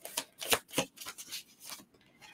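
A deck of tarot cards being shuffled by hand: a quick, irregular run of card flicks and snaps, the loudest about half a second in, thinning out toward the end.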